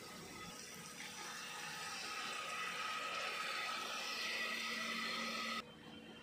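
Water running steadily from a tap into a vessel, growing louder over the first few seconds and stopping abruptly near the end.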